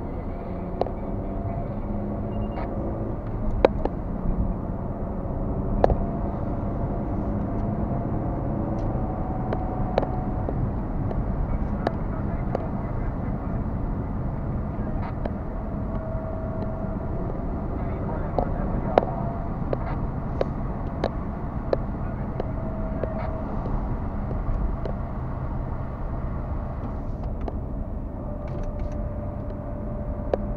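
Steady engine and tyre noise of a car driving, heard from inside the cabin through a dashcam, with frequent small sharp clicks throughout.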